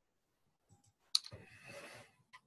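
A single sharp click a little over a second in, followed by a short rustle of handling noise, heard over a video-call microphone.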